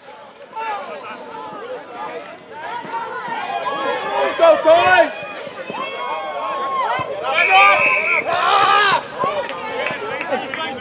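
Many voices of spectators and players shouting and cheering over one another, growing louder through the run and loudest near the end.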